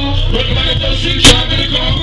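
Live hip hop performance: a loud beat with heavy bass over a club sound system, with a rapper's voice on the microphone over it. One sharp, very loud crack comes a little past halfway.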